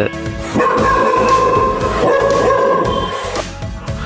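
A dog's long, drawn-out whine held at a steady pitch for about three seconds, with background music under it.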